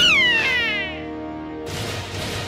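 A cartoon yowl of pain: one pitched cry that peaks at the start, then slides down in pitch over about a second, over sustained background music. A noisy whoosh comes in near the end.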